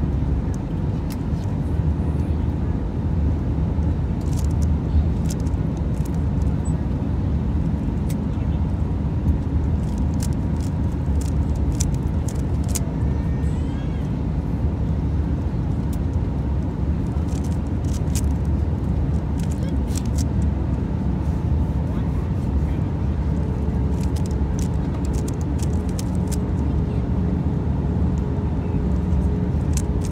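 Plastic clicks and clacks of a 3x3 Rubik's cube being turned fast, in bunches of quick turns, over a steady low cabin drone of a vehicle in motion.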